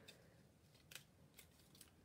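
Near silence with a few faint, brief clicks from mini glue dots being taken off their roll and pressed onto the foil paper.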